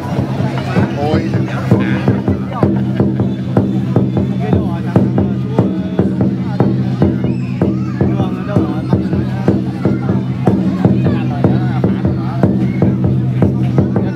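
Festival drum beaten in a fast, steady rhythm, several strikes a second over a low ringing tone, accompanying a traditional Vietnamese wrestling bout, with crowd voices underneath.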